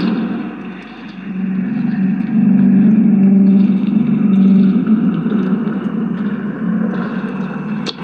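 A police SUV driving slowly past close by, its engine and tyres running steadily, with a steady low hum underneath. The sound dips about a second in, then rises again.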